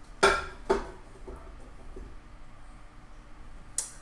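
A plate set down on a microwave oven's glass turntable: two sharp clinks with a brief ring, about half a second apart near the start, then one light click near the end.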